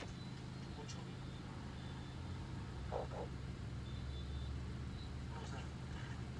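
Steady low hum of a car's engine idling, heard from inside the cabin. A brief faint murmur of voices comes about halfway through.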